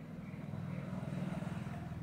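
A low, steady motor rumble with a fast, even pulse, growing slightly louder.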